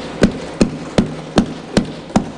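Members of the house thumping their wooden desks in applause: an even, rhythmic knocking of about two and a half thumps a second.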